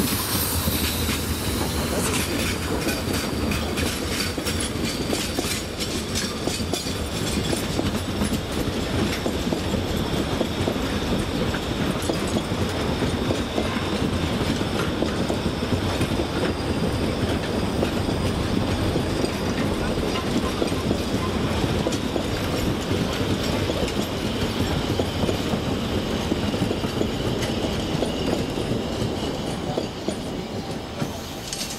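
Narrow-gauge (750 mm) passenger coaches rolling past close by, their wheels clattering steadily over the rail joints in a dense run of clicks; the sound drops away at the very end as the last coach passes.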